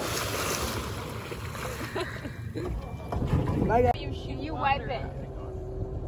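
Water splashing and settling as a person plunges into the lake off the back of a boat, fading within the first second, over a boat engine's steady low idle. Short bursts of voices come about three and five seconds in.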